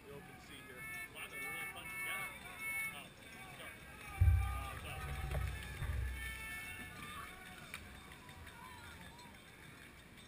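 Indistinct background voices, faint and distant, with a low rumble on the microphone for about two seconds from roughly four seconds in.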